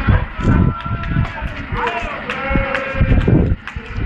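Indistinct voices, with irregular low rumbling surges underneath.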